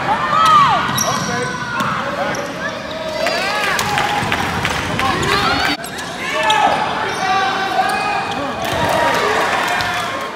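Basketball sneakers squeaking on a hardwood gym floor in many short chirps, with a basketball bouncing and players' voices echoing in the hall.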